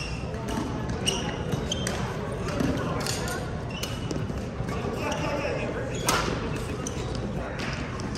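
Badminton rally: sharp racket strikes on the shuttlecock, the loudest about six seconds in, with short shoe squeaks on the court mat, over the echoing chatter of a busy sports hall.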